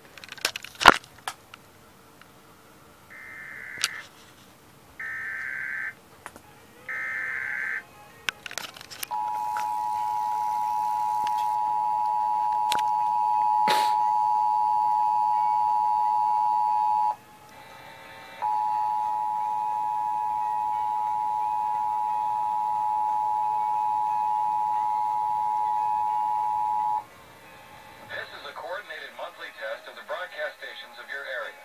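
Emergency Alert System Required Monthly Test played over a loudspeaker. A couple of knocks come about a second in, then three short warbling SAME data bursts of the alert header, then the loud steady two-tone attention signal for about eighteen seconds, broken once by a short gap. A voice announcement begins near the end.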